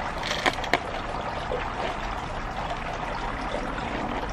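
Two light clicks of LECA clay balls against a glass jar as a plant is pressed down into them, within the first second, over a steady background hiss.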